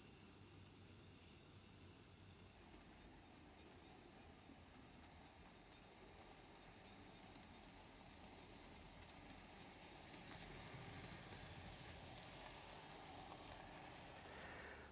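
Near silence, with the faint running of an OO gauge model goods train, its wagons rolling on the track, growing a little louder in the second half.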